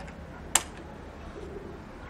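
A single sharp click about half a second in, from hands tightening a cable connection on a solar battery terminal, over low steady background noise.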